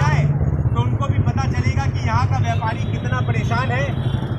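Voices talking indistinctly over a steady low rumble of road traffic and engines.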